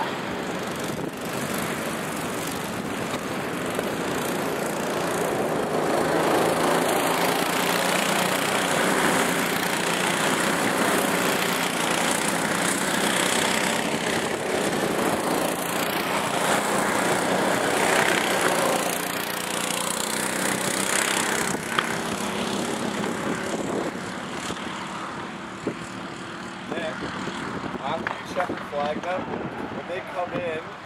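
Small go-kart engines running as karts lap the track. The sound swells through the middle as karts come nearer, then fades again.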